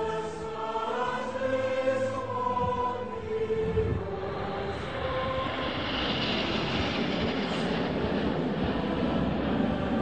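Choral music until about four seconds in, then the rushing noise of a formation of Red Arrows BAE Hawk jets flying past overhead, swelling to its loudest about six seconds in and carrying on as a steady rush, with the music faintly beneath it.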